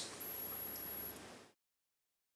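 MAHA Powerex MH-C9000 battery charger giving a faint, steady high-pitched whine over light hiss while charging AA cells at about 1000 mA. It stops a little over a second in, leaving silence.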